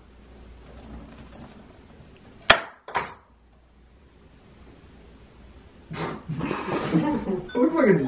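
Two sharp clinks of a small hard object, about half a second apart, the first the loudest sound here; voices come in about six seconds in.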